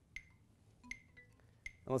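Metronome clicking at quarter note = 80: three short, sharp clicks evenly spaced about three quarters of a second apart.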